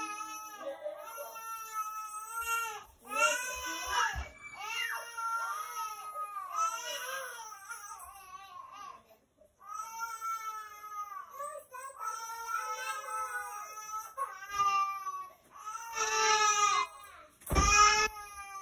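A baby crying in a run of long, high-pitched wails, with a short break about halfway through.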